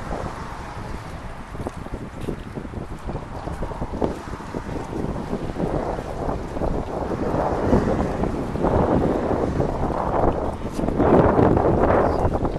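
Wind rumbling on the microphone over splashing, sloshing raceway water stirred by people wading and working dip nets; the splashing builds in the second half and is loudest near the end.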